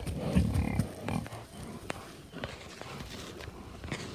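A yak bull gives a low call in about the first second. After it come a few faint scattered clicks.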